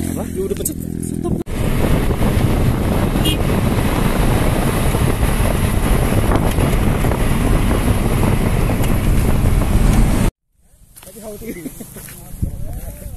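An engine idling steadily, then after a cut the loud, steady rumble and wind noise of riding inside a vehicle driving across loose volcanic sand. The ride noise cuts off abruptly about ten seconds in, and faint voices follow.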